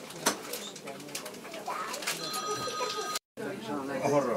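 Indistinct passenger voices and small clicks inside a moving train carriage. A steady electronic beep tone sounds for about a second past the middle, then the sound cuts out for a moment just before the end.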